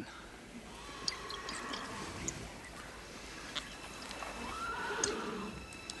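A horse whinnying: a faint call about a second in and a longer, louder one about four to five seconds in, with a few light knocks.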